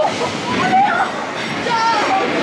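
Pirate-ride show audio: recorded pirate voices calling out in wavering, sing-song pitch over background music, from the animatronic pirate-ship scene of a boat dark ride.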